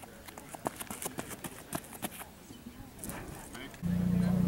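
Footfalls of a high jumper's run-up on a rubberized track: a quick, uneven series of sharp slaps that stops about two seconds in. Near the end a loud, steady low rumble starts suddenly.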